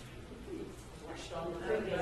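People talking casually in a room, with one voice saying "okay" near the end.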